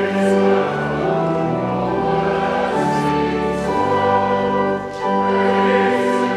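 A hymn sung by many voices with organ accompaniment, held notes moving in steps, with a brief break about five seconds in.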